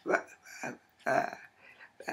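A woman's voice making short wordless vocal sounds, about three in two seconds, with pauses between.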